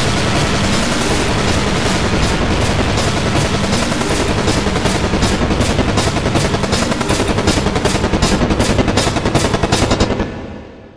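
Loud, heavily distorted mix of layered sound effects, a dense harsh noise. From about halfway through it breaks into a rapid stuttering rattle of pulses, several a second, growing stronger toward the end.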